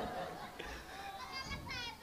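Faint, high-pitched children's voices, with a few short calls in the second half.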